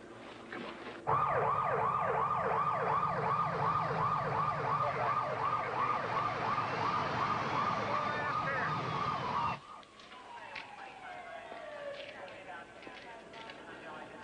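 Emergency vehicle siren in a rapid yelp, about three sweeps a second over a low engine rumble, cutting off abruptly about nine and a half seconds in. It is followed by a fainter siren tone slowly falling in pitch.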